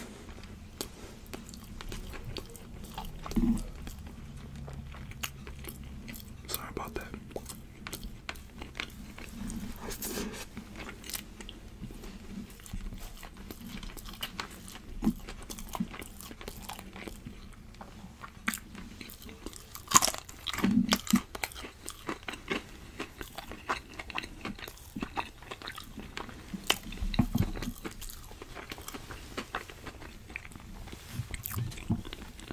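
Close-miked chewing and biting of food, with wet mouth clicks and some crunching, and scattered taps of a fork; one sharp click stands out about twenty seconds in.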